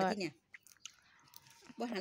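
A person chewing food: a few faint, wet mouth clicks in a short pause between words.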